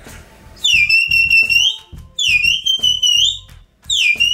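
Sheepdog herding whistle blown in three long, shrill blasts, each sliding down at the start, held on a steady high note, then sliding up at the end; the third runs on past the end.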